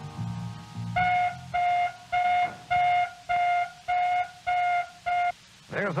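A 1979 Chevy Van's optional anti-theft alarm going off as someone works at the door: eight evenly spaced, steady-pitched blasts, just under two a second, starting about a second in and stopping after about five seconds.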